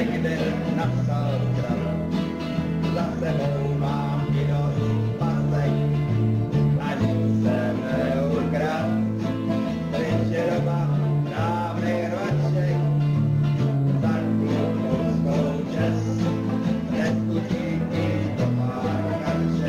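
A man singing a song in Czech, accompanied by several strummed acoustic guitars, one of them an archtop.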